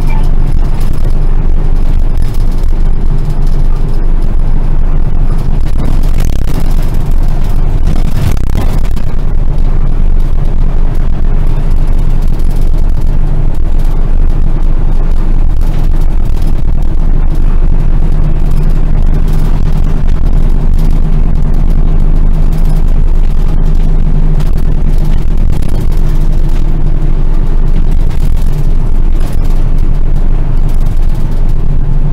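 Route bus's diesel engine running under way, heard from inside the cabin at the front: a steady low drone over road and tyre noise, its note shifting a few times as the bus changes speed.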